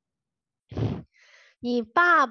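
A woman's breath or sigh into the microphone about two-thirds of a second in, then she starts speaking near the end.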